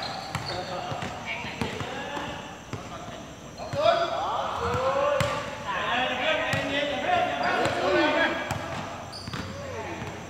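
A basketball bouncing on a hard court, with players' shoes and knocks of play, and players' voices calling out from about four seconds in.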